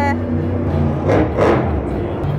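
Monster truck's supercharged V8 engine noise filling the stadium: a steady low drone with two short, louder surges a little past a second in, mixed with background music.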